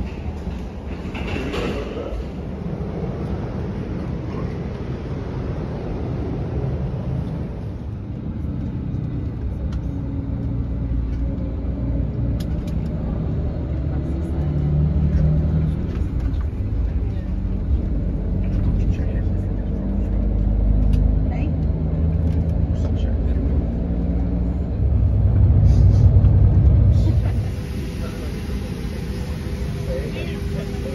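Low rumble of a coach's engine and the road, heard from inside the passenger cabin, with indistinct chatter from the passengers. The rumble swells for a couple of seconds late on, then drops away.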